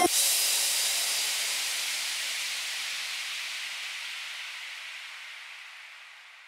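A long wash of hissing noise, the closing sweep effect of an electronic dance remix, left ringing out once the beat stops and fading steadily away over about six seconds as the track ends.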